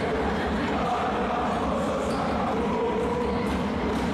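Basketball gym crowd noise: fans chanting and cheering steadily during play.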